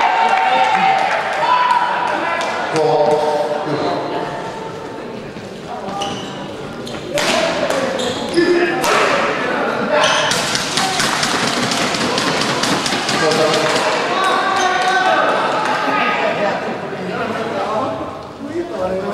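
Badminton doubles play on an indoor court: sharp racket strikes on the shuttlecock and shoes on the court mat, with a fast run of clicks and squeaks in the middle. Voices in the hall come and go around them.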